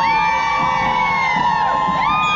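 Marching crowd of protesters yelling and cheering, several voices holding long, high-pitched cries that overlap and drop off at the end.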